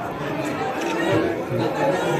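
Several people talking at once, a murmur of overlapping voices from a crowd packed into a room.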